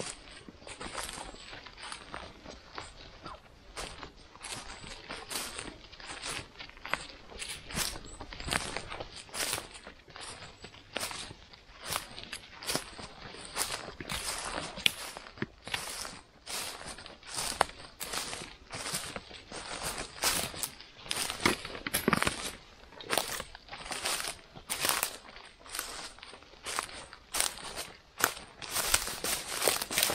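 Irregular crackling and rustling of moss and forest litter, a few short crackles a second, as small winter chanterelles are plucked from the moss and handled close to the microphone.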